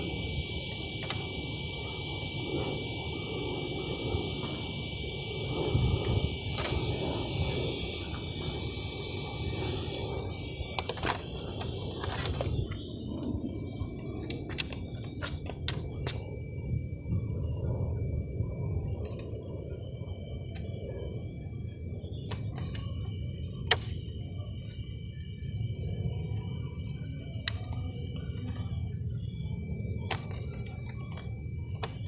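Scattered clicks and taps as hands work a radio-controlled car's plastic body shell, the sharpest about three-quarters of the way through, over a steady low rumble and a thin, steady high whine.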